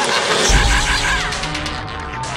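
Dense music with a deep low boom coming in about half a second in and a warbling pitch that slides down around the one-second mark.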